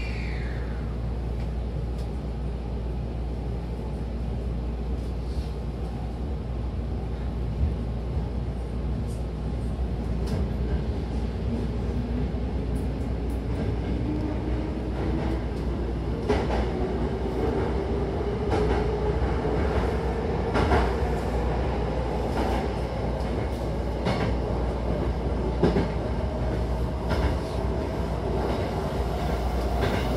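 Hankyu Takarazuka Line electric train heard from inside the car as it pulls away: a steady low hum, then from about a third of the way in a traction-motor whine that rises slowly in pitch as the train gathers speed. Wheels click over rail joints, more often as it speeds up.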